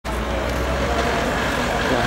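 Steady outdoor street noise: a low rumble of road traffic, with faint voices in the background.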